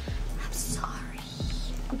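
A woman speaking softly in a breathy near-whisper, over faint background music.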